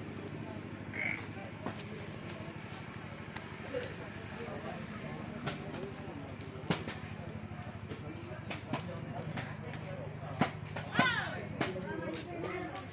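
Steady low mechanical hum under faint background voices, with a few sharp clicks and a brief louder voice near the end.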